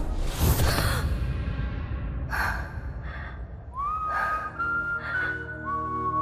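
Dramatic background score: a noisy swell at the start, a few short breathy accents, then a high, whistle-like melody that glides up into its first note and holds over a low sustained drone from a little past halfway.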